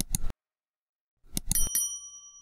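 Subscribe-button sound effect: a quick pair of mouse clicks at the start, more clicks about a second and a half in, then a small notification bell dings and rings on briefly.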